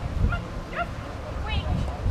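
A small dog giving about three short, high yips while running an agility course, with wind rumbling on the microphone.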